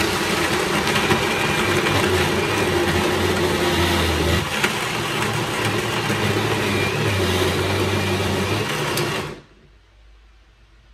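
Master Chef countertop blender motor running steadily while blending a smooth green purée of spinach, cucumber and ginger, then switched off about nine seconds in, its sound dying away quickly.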